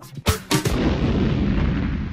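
A break in a disco track: two sharp drum hits, then from about half a second in a long, dense rumble with no beat or vocals, heaviest in the low end, like an explosion effect.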